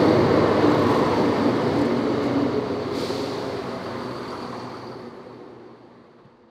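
Southern Class 171 Turbostar diesel multiple unit running into the platform: a steady rumble with a thin high whine over it and a single click about halfway, the whole sound fading out toward the end.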